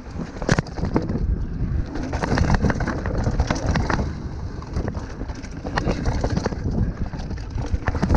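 Mountain bike descending a trail, heard from a camera mounted on the rider: tyres rolling over dirt, roots and wooden boardwalk, with repeated sharp knocks and rattles from the bike and wind noise on the microphone.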